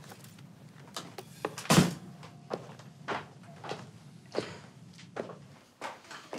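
A string of sharp knocks and thumps, roughly one every half-second to second, the loudest nearly two seconds in, over a low steady hum that stops shortly before the end.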